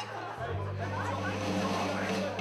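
Audience chatter in the room, with a steady low note from the band's amplified instruments coming in about half a second in and holding.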